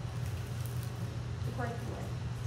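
A steady low hum fills the room, with a man speaking one word near the end.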